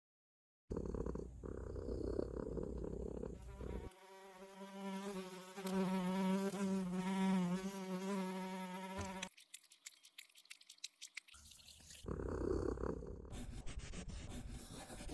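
Cartoon sound effect of a fly buzzing, a wavering pitched drone lasting about five seconds in the middle. It follows a low noisy rumble at the start, and is followed by a run of quick clicks and another burst of low noise near the end.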